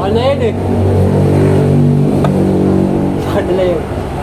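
An engine running steadily nearby, its pitch shifting a little about halfway, with a single short click about halfway.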